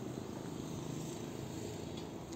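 Steady outdoor background noise with a faint low hum and hiss, and no distinct event.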